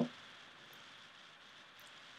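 Low, steady background hiss close to room tone, with a couple of faint light ticks; the stirring and the cheese pouring in make no clear sound.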